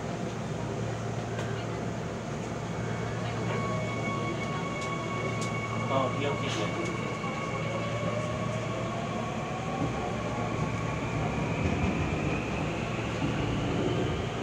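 Seoul Line 2 subway train pulling away from a station: an electric whine from its traction motors rises in pitch as it gathers speed, over a steady rumble. A few sharp clicks come about five to seven seconds in.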